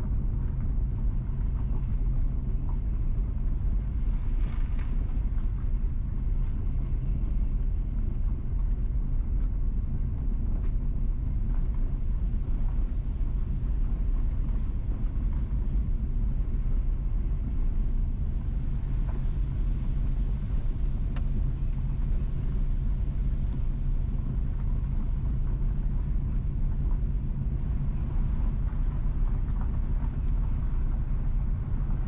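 Steady low rumble of a car driving slowly, heard from inside the vehicle: engine and tyre noise, with a little more hiss for a few seconds past the middle.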